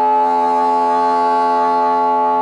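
Bassoon holding one long steady note, rich in overtones.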